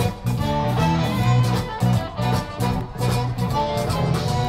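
A zydeco band playing live: piano accordion, rubboard, electric guitars, bass and drums, with a steady beat.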